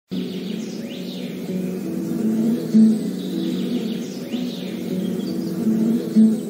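Intro music: a low, steady melodic bed with high chirping glides laid over it twice and one short loud hit about three seconds in.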